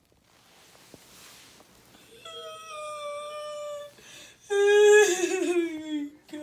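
A voice giving two long held calls with no words. The first is steady and moderate, starting about two seconds in. The second is louder and starts about four and a half seconds in, its pitch wavering and falling.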